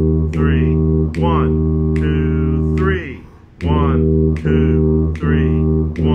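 Tuba playing a low E-flat over and over in a slow three-beat rhythm. One short note ends just after the start, then one held for about two seconds, a brief gap near the middle, and three evenly spaced detached notes.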